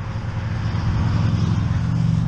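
A motorcycle engine running as the bike rides along the interstate toward the microphone, growing steadily louder as it nears and passes beneath near the end.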